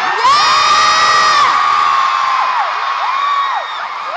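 Arena crowd of fans screaming and cheering, loudest in the first second and a half, with single high-pitched screams rising and falling through it.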